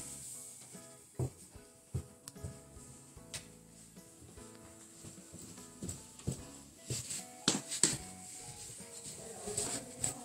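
Soft background music with steady held notes, under a series of irregular soft thuds of footsteps going down carpeted stairs.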